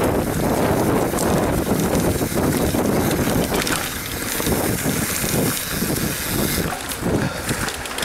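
Mountain bike ridden fast down a dry dirt singletrack: wind buffeting the camera microphone over the rumble of tyres on the dirt, heaviest in the first half, then breaking into uneven bumps and jolts.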